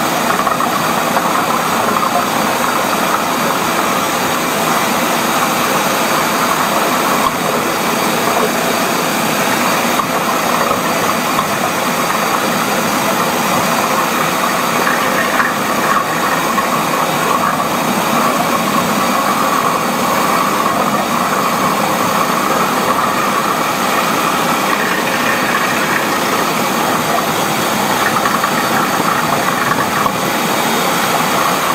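Flexible-shaft drain-cleaning machine running steadily, its motor spinning the cable inside a clogged kitchen sink drain pipe to scour it clear.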